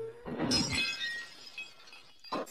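Something brittle, such as glass or crockery, shatters about half a second in, and its pieces ring and tinkle as they fade over the next second. The tail of a cat's meow ends just before it.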